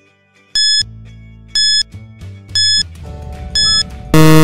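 Countdown timer sound effect: short high beeps, one each second, four in all, counting off a five-second answer time, over quiet background music.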